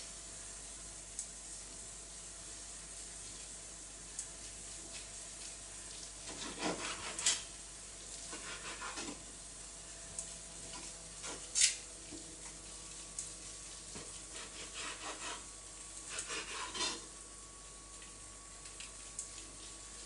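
Carving knife slicing through a braised veal roast and scraping against a wooden cutting board: a few short, scattered strokes over a faint steady hiss.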